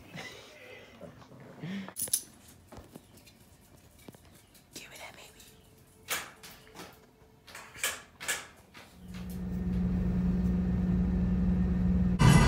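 Faint soft rustles and light clicks of a small dog dragging a long plush toy over carpet. From about nine seconds in, a steady low hum fades up and holds.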